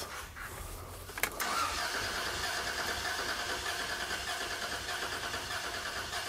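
A 1998 Toyota 4Runner's 3.4-litre V6 (5VZ-FE) cranking over on the starter, with the number two spark plug removed, for a cranking compression test. The cranking starts with a click just over a second in and then runs on with an even, rapid beat.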